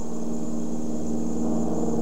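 Steady droning hum of a small airplane's cabin, with a held low tone that swells slightly about a second and a half in.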